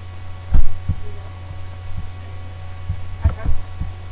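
Steady low mains hum on the recording, with several dull low thumps. The loudest thump comes about half a second in, and a cluster of smaller ones follows near the end.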